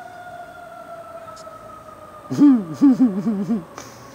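A distant siren holds one long tone that slowly falls in pitch. Midway a man laughs briefly, a short run of 'ha' sounds that is the loudest thing heard.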